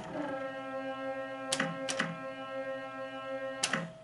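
Sammy's first-generation Hokuto no Ken pachislot machine playing a sustained chord of electronic tones while its reels spin. Sharp clicks of the reel stop buttons come about a second and a half in, twice close together near two seconds, and again near the end.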